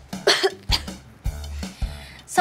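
A girl coughs once, shortly after the start, over a pop backing track with a steady low beat; the cough comes from a throat tired from singing.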